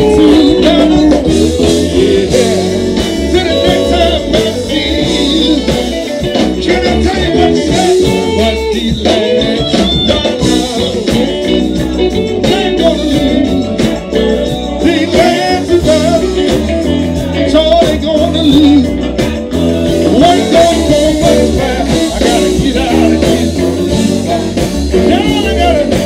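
A live blues/southern soul band playing through a PA, with bass, guitar, keyboards and drums under singing.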